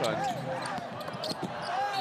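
A basketball dribbled on a hardwood court in an arena: a few short bounces, with crowd and court voices around them.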